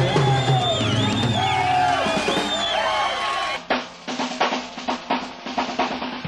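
Live blues-rock band music: electric guitar bending notes over a sustained chord, then an abrupt cut about three and a half seconds in to a different, duller-sounding live recording where a drum kit plays snare and bass-drum hits.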